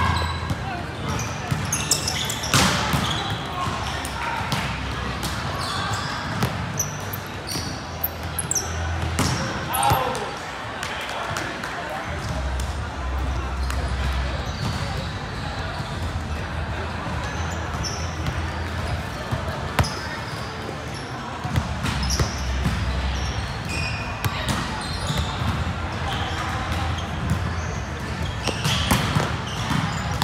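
A volleyball being hit during an indoor game: scattered sharp smacks of the ball, several near the start and a cluster near the end, over the players' voices calling and chatting.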